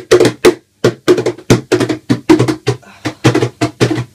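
Hands slapping the body of an acoustic guitar laid flat, played like a drum: quick, uneven beats, about four or five a second, each with a hollow boom from the guitar's body.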